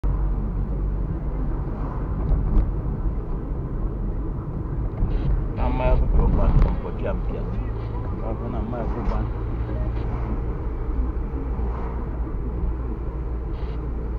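Steady low engine and road rumble of a car driving slowly, heard from inside the cabin, with a short stretch of voice around the middle.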